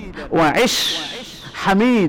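A man's voice speaking in short phrases, with a drawn-out breathy hiss in the middle.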